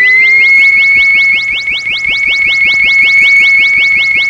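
Electronic sound effect: a pure tone glides up in pitch over the first second and then holds high, with rapid, evenly repeated chirps about eight a second. A lower steady tone underneath drops out about a second in.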